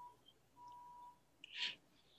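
Faint electronic beep tone sounding twice, each about half a second long, followed by a short breathy hiss about a second and a half in.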